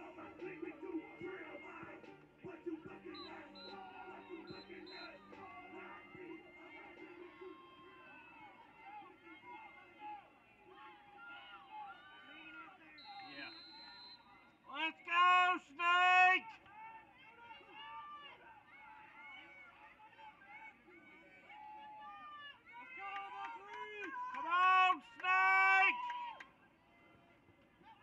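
Faint voices with music playing underneath. A high-pitched voice calls out loudly a couple of times, once about halfway through and again a few seconds before the end.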